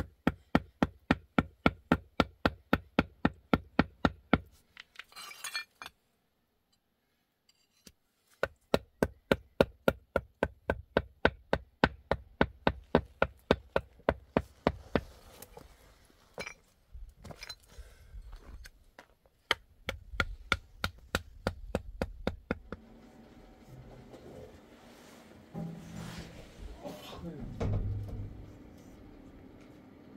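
A hammer tapping on ceramic tile pieces in quick, even strikes, about four or five a second, each a sharp ringing clink, in two long runs with a pause between and a few scattered knocks after. Near the end quieter, mixed indoor sounds take over.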